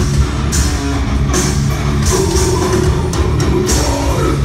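Heavy metal band playing live and loud: distorted electric guitars over a drum kit, with repeated cymbal crashes.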